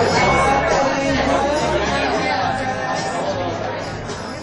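Audience members in a small club chatting among themselves after the band's set, several overlapping voices, slowly fading toward the end.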